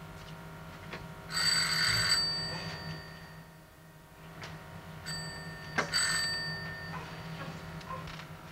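Electric doorbell rung twice, about four seconds apart: each press gives roughly a second of bell rattle whose ringing dies away after it.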